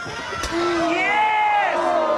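A crowd of spectators shouting and cheering at a wrestling match, several voices at once rising and falling, with a sharp thump about half a second in.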